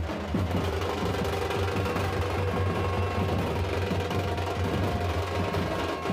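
Procession drumming with music: continuous drum beats under a few steady held tones, with a strong low hum beneath and sharper drum strikes near the end.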